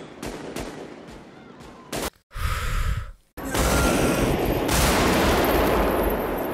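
Film soundtrack of a street gun battle: scattered rifle shots at first, a short louder burst about two and a half seconds in, then from about three and a half seconds a dense, continuous run of loud automatic rifle fire.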